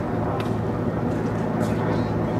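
Helicopter flying overhead, its engine and rotor making a steady low hum.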